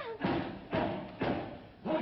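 A series of four loud thumps, evenly spaced at about two a second, each dying away quickly.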